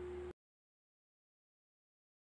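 Near silence: a faint steady hum with a thin high tone for a fraction of a second, then the soundtrack cuts off abruptly to dead silence.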